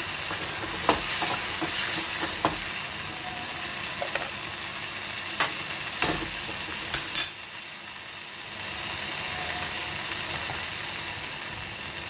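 Tomatoes, cumin and curry leaves sizzling in hot oil in a steel kadhai while being roasted, with a metal spoon scraping and clicking against the pan several times as they are stirred. The sizzle drops briefly about two-thirds of the way through, then returns.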